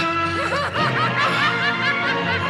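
A woman's laughter, a run of short rising-and-falling laughs starting about half a second in, over sustained background music.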